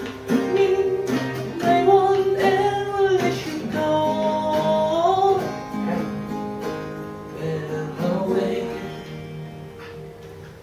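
Two acoustic guitars playing together, with a man singing a slow melody over them in long, gliding held notes. The playing and voice grow softer near the end.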